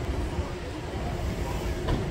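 Steady low rumble of outdoor street ambience, such as traffic or wind on the microphone, with one sharp click just before the end.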